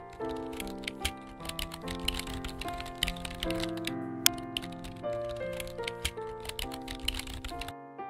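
Computer keyboard typing clicks, a rapid irregular patter, over background music with held melodic notes; both stop just before the end.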